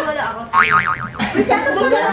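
A short wobbling 'boing' sound, its pitch swinging rapidly up and down several times for under a second, about half a second in.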